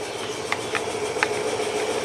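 A screwdriver turning a screw into a chainsaw's top cover, with a few light clicks, over a steady mechanical hum.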